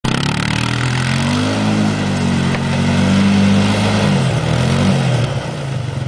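ATV engine revving as the quad spins and accelerates through snow, its pitch rising, holding, then dropping as the throttle eases off near the end.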